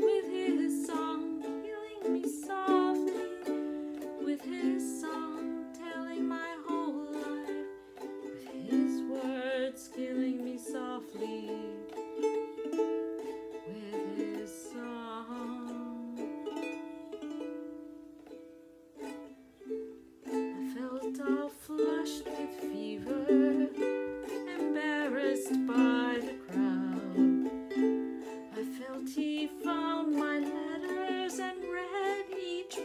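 A woman singing a slow ballad to her own ukulele accompaniment on a Kala ukulele. The music drops to a quieter passage a little past halfway, then swells again.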